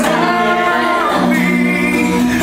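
Male singing with acoustic guitar accompaniment; the voice holds a long note through the second half.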